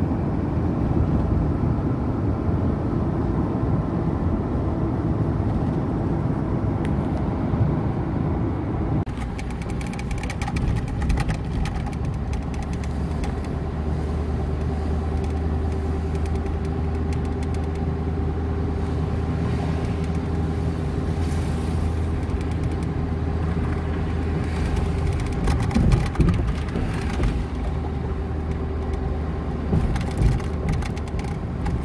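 Road and engine noise heard inside a moving car's cabin. It is a dense rumble at first, then about nine seconds in it changes abruptly to a quieter, steadier engine hum at lower speed. A few louder knocks come near the end.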